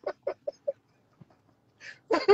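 A man's laughter tailing off in a run of short, clucking pulses that die away within the first second, then a sharp breath in near the end before the laughing starts again.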